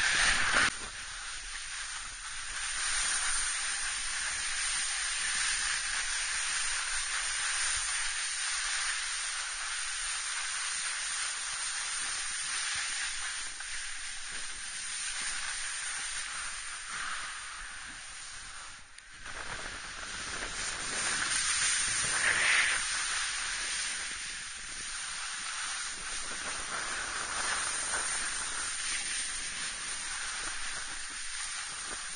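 Snowboard bases and edges sliding and scraping over soft spring snow: a steady hiss that swells and eases as the rider turns, dropping out briefly about two-thirds of the way through.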